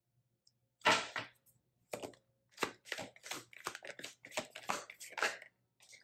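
A deck of tarot cards being shuffled by hand: one loud papery swipe about a second in, then a quick run of card flicks and clicks.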